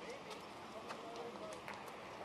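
Faint background voices of people talking, over a steady outdoor hiss, with a few light clicks.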